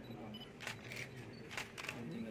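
Camera shutters clicking a few times, short sharp clicks about a second apart, over faint room murmur.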